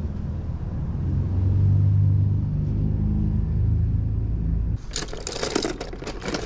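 A low, steady engine rumble, like a vehicle running close by, growing louder about a second in and cutting off abruptly near the five-second mark. After it, sharp clicks and rattles of hard objects being handled.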